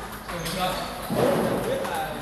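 Table tennis ball clicking off paddles and the table during a rally, with players' voices around it in a large hall.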